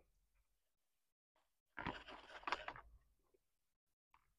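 Crunchy chewing of a bite of McRib sandwich with onions and pickles on it, close to the mouth, for about a second starting about two seconds in; otherwise near silence.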